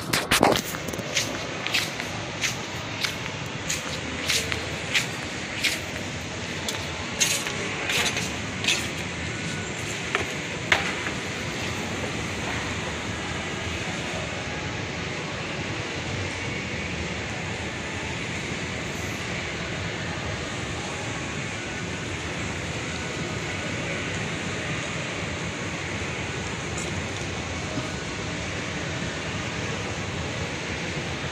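Footsteps on a hard tiled floor at a walking pace, about three every two seconds, stopping about eleven seconds in. Under them and after them, the steady mechanical hum of a running escalator with mall ambience.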